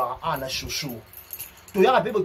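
A man speaking in short, animated bursts, with a gap of about a second; a brief high rattle, like keys jangling, sounds about half a second in.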